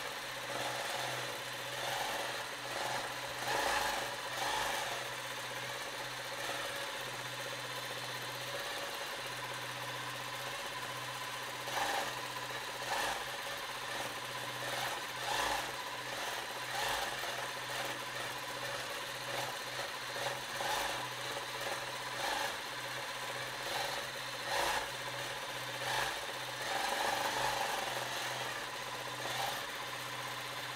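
Juki Miyabi J350 long-arm quilting machine stitching as it is guided across a quilt on a frame: a steady motor hum with louder spells of stitching and rattle that come and go every few seconds.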